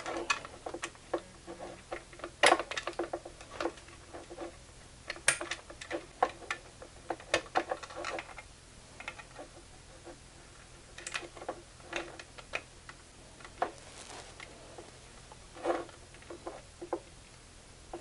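Irregular small clicks, taps and scrapes of hands handling stripped wire leads and poking them into the slots of a plug-in power meter's outlet.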